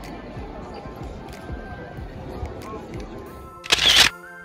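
Crowd hubbub: many people talking at once, with faint music underneath. In the last half second a loud, brief rush of noise cuts across it.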